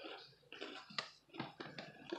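Faint rustling of a plastic snack bag being picked up and handled, with a few small clicks, the sharpest about a second in.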